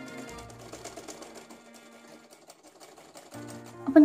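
Merritt sewing machine stitching through folded fabric: a fast, even run of ticks that thins out and stops a little after halfway through.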